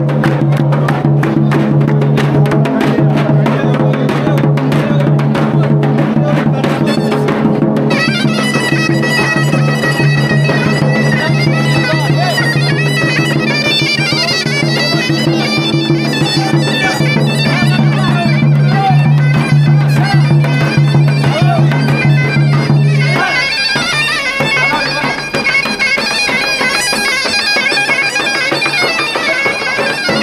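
Live Black Sea horon dance music: a droning melody instrument played over a steady davul drum beat. The drone breaks off about three quarters of the way through and comes back near the end.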